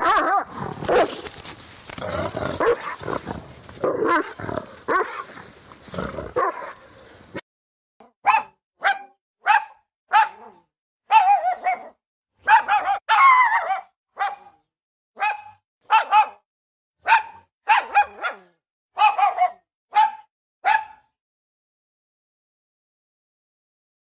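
Dog barking: at first dense, overlapping barks over background noise. After an abrupt cut about seven seconds in come more than a dozen separate, sharp barks, a little more than one a second, some in quick pairs.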